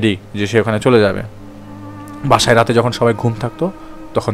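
A man narrating in Bengali over a steady, low background-music drone, with a pause of about a second in the middle where only the drone is heard.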